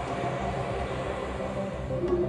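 Underground train running through a brick tunnel, a steady low rumble with a faint whine above it.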